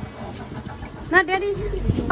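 A motorboat's engine runs as a low rumble that grows near the end, under a person speaking from about a second in.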